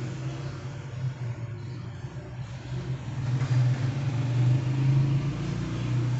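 A steady low hum with a faint hiss behind it, a little louder from about three seconds in.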